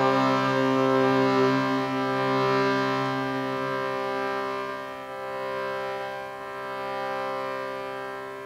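A shruti box's reeds sounding a held drone chord, steady in pitch, swelling and dipping with the pumping of the bellows and fading away near the end.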